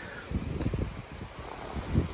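Wind buffeting the microphone: a low, irregular rumble.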